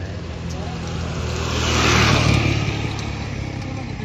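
A motor vehicle passing close by on the road: its tyre and engine noise swells to a peak about halfway through, then fades, over a steady low hum.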